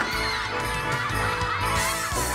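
Several children squealing and shouting at play, over background music.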